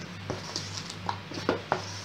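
Spoon folding thick cake batter in a stainless steel mixing bowl: soft scraping with several light, irregular knocks against the bowl, over a steady low hum.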